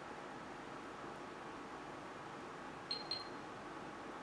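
Faint steady hiss, then about three seconds in two short high beeps close together from a hand-held LiPo battery checker as it is plugged into a pack's balance lead.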